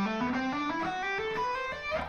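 Electric guitar playing a smooth legato run in E Aeolian, a quick series of notes climbing step by step in pitch.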